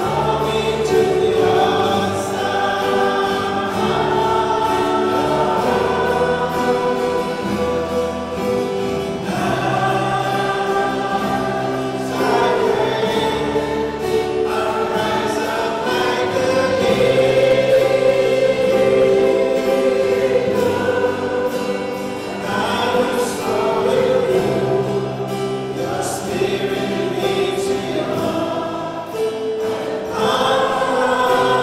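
Church choir singing a hymn over sustained low accompanying notes.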